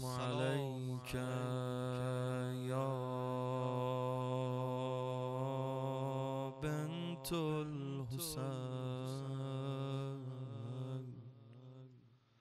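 A man's unaccompanied solo voice chanting a Persian Muharram lament (noha) into a microphone: one long held note with a few ornamental turns of pitch, fading out near the end.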